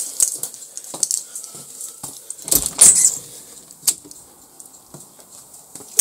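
A back door being opened: jangling and light clicks from the latch and handle, with a louder knock about two and a half seconds in and a sharp click near four seconds.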